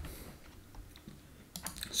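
Faint room tone, then a few quick computer clicks in the last half second, starting the program's run.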